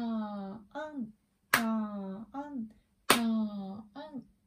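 Hand claps, one on each half note, three in all about a second and a half apart, each clap followed by a woman chanting a long "taa-an" in time as a rhythm exercise.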